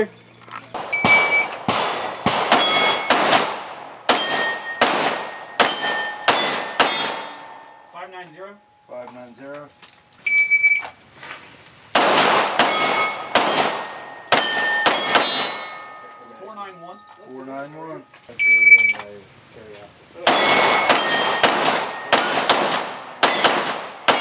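A shot-timer beep, then a string of rapid 9mm shots from a Glock 17 Gen4 pistol, with AR500 steel plates ringing from the hits. This happens three times, with a pause of a few seconds between strings.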